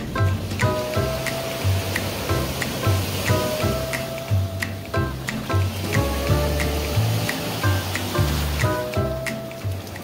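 Background music with a steady beat, about two beats a second, over a bass line.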